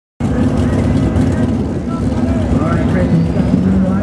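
Dodge Ram's Cummins turbo-diesel engine running hard under load as the pickup pulls a weight sled, with a whistle rising in pitch near the end as the turbo spools up.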